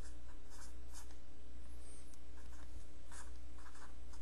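Marker tip scratching across paper in a string of short writing strokes, over a steady low hum.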